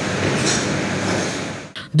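Steady mechanical noise, an even rushing hiss that fades out near the end.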